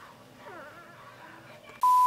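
Faint, short high squeaks from newborn puppies. Near the end comes a sudden loud, steady electronic test-tone beep.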